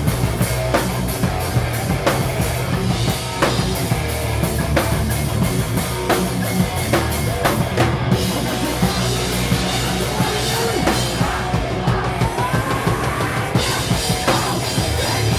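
Hardcore punk band playing a song live and loud: a drum kit hitting in a fast, steady rhythm under electric guitar and bass guitar.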